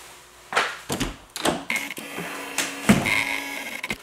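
An interior door being unlatched and swung open: several clicks and knocks, with a thin squeak near the end.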